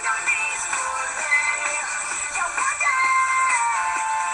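A pop song with a sung vocal plays, thin and with little bass. A long held vocal note steps down in pitch near the end.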